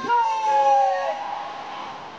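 Music through large outdoor loudspeakers: a long high note that swoops up and then slides slowly down, over a steady lower held tone, over crowd noise.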